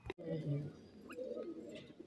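Grey francolin giving a few soft, low cooing notes in the first half second, then only faint scattered sounds.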